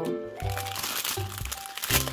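Large plastic-foil surprise packet crinkling as it is handled, starting about half a second in, over background music with regular bass notes.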